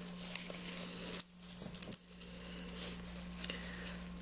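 Thin plastic trash-bag sheet of a homemade kite rustling and crinkling irregularly as it is handled and turned over, with a faint steady hum underneath.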